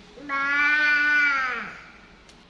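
One long drawn-out vocal call, held on a steady pitch for over a second and then dropping in pitch as it fades.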